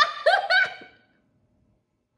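A woman's high-pitched giggling in a few quick pulses that stops about a second in.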